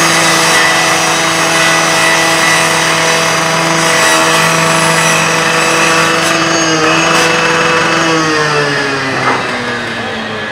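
Gas-powered rotary rescue saw running at full throttle while its blade cuts through a sheet-metal garage door, the engine's steady pitch under a loud grinding hiss from the blade. About eight seconds in the throttle is let off and the engine pitch falls as the saw winds down.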